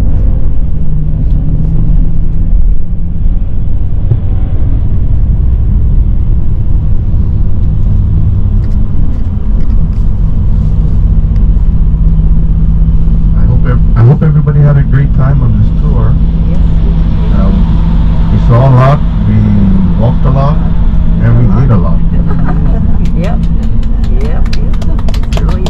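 Steady low drone of a coach's engine and road noise heard from inside the cabin as it drives along an expressway. Voices are briefly heard partway through.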